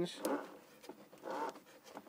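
A man's voice speaking in short stretches, mid-explanation; no drill or other machine sound stands out.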